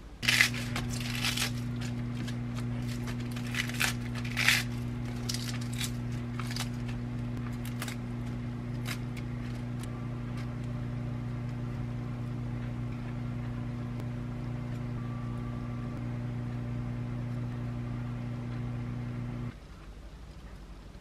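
Microwave oven running with a steady electrical hum, heating a cheese-topped patty to melt the cheese; a few clicks come as it starts, and the hum cuts off abruptly shortly before the end.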